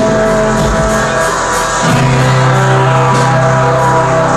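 Live jazz-funk band playing a slow song: saxophone over guitar and drums. A low bass note comes in about halfway and holds.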